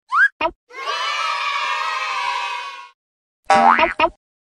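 Cartoon sound effects: a short rising boing-like glide and a small pop as a title letter pops in, then about two seconds of a crowd of children cheering and shouting. Near the end comes a brief rising whoosh-like sweep.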